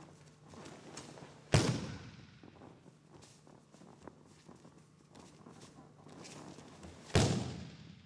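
Two judo throws done at full speed, each ending in a loud slam as the thrown partner lands on the tatami mats. The first comes about a second and a half in and the second near the end, and each echoes briefly in the hall. Faint scuffs of feet and gi cloth on the mat fall between them.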